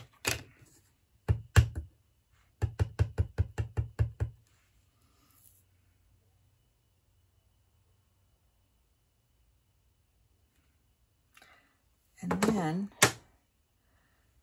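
Clear acrylic stamp block tapped on a Tuxedo Black Memento ink pad to ink a sentiment stamp: two louder knocks, then a quick even run of about ten taps, about six a second.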